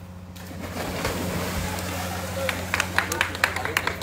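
Swimming-pool water splashing as several people plunge in at a start signal, with crowd voices and shouting over it. Sharp splashes and knocks come thicker in the last second or so.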